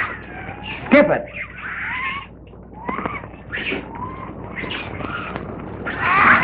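A string of short animal cries on an old film soundtrack, each sliding up and down in pitch, several in a row with brief gaps between them.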